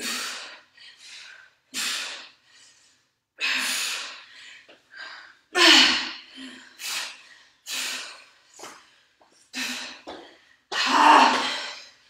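A woman's forceful breaths out, some with a slight voiced grunt, in a string of short bursts roughly every one to two seconds: effortful breathing while pressing heavy dumbbells overhead.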